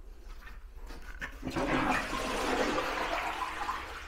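Toilet flushing: a rush of water that starts about a second and a half in, swells quickly, then slowly dies away.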